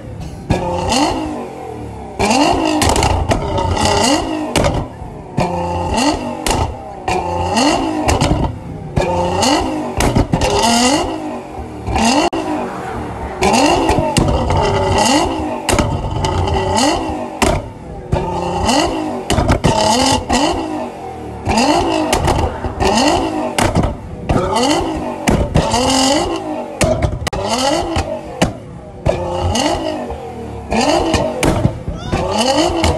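Stage 2 tuned Nissan GT-R's twin-turbo V6 revved over and over, each blip rising in pitch, with loud bangs and crackles from the exhaust as unburnt fuel ignites and flames shoot from the tailpipes.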